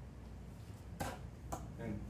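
Faint handling sounds of a microfiber cloth wiping down a steel ebike frame: two light clicks, about a second in and half a second later, over a low steady hum.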